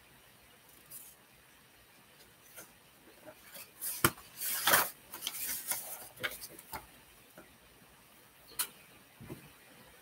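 Sheets of paper being handled and rustled, with a few light clicks and knocks from handling things on a desk, busiest around the middle.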